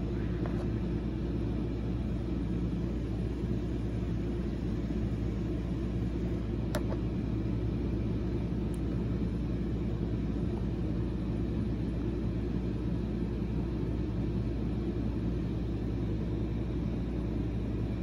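Steady low rumble of background noise, with a faint click about seven seconds in and another about two seconds later.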